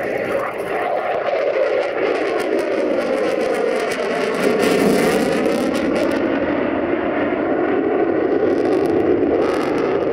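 Lockheed Martin F-22 Raptor's twin Pratt & Whitney F119 turbofans in afterburner, a loud steady rush of jet noise. A rough crackle comes in over the middle seconds, and a swishing sweep in pitch runs through it as the jet passes.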